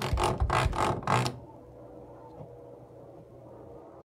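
A door being opened by its knob: a few quick rattles and knocks over the first second and a half, then a faint steady hum.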